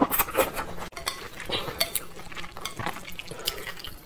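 Close-miked mouth sounds of eating saucy wide flat noodles: wet slurping and chewing, with a string of irregular smacking clicks.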